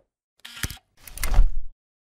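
Sound effects of an animated channel-logo intro: a short rushing swish with a sharp knock just after half a second, then a louder swelling swish over a deep boom that peaks near a second and a half and cuts off suddenly.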